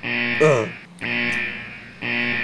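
Electric guitar chords struck about once a second, each ringing out and fading, with a short falling "uh" from a voice over the first one.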